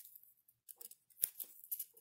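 Strips of glossy magazine paper rustling and crinkling between the fingers as they are threaded and pulled, in a series of short, irregular bursts.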